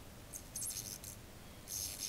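Mini Tesla coil discharging into the metal end cap of a fluorescent tube held to its top terminal: a faint, high-pitched crackling hiss in two short spells, one near the start and one near the end.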